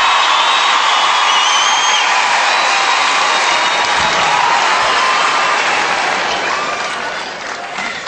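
Large studio audience applauding and cheering after a stage act, with a brief high whistle a second or so in; the applause dies away gradually over the last couple of seconds.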